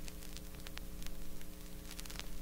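Vinyl record surface noise with no music playing: scattered crackles and pops over a steady electrical hum from the playback chain.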